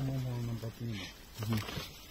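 A person's voice, speaking quietly in a few drawn-out syllables that the transcript does not catch.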